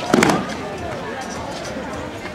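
A loud slap of several bodies hitting foam mats at once in a breakfall, a single brief burst just after the start, over the chatter of an onlooking crowd.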